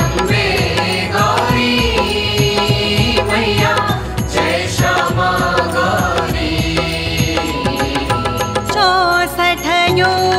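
Indian devotional music: a voice chanting a mantra-like melody over instrumental accompaniment with frequent percussion strokes.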